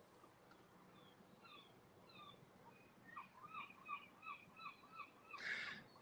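Faint bird calling in a quiet outdoor setting: a series of short, repeated chirps, about two to three a second, growing clearer in the second half. A brief hiss comes just before the end.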